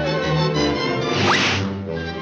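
Orchestral cartoon score playing, cut by a short whoosh sound effect with a quickly rising whistle about a second and a half in.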